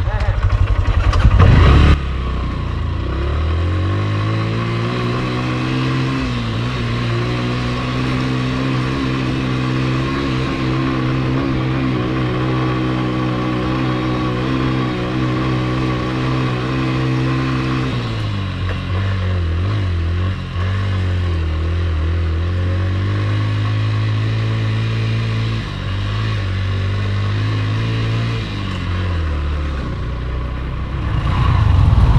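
Motorcycle engine running as it is ridden, heard from on the bike. The revs climb over the first few seconds and hold steady, drop about halfway through, climb back a couple of seconds later, and ease off near the end.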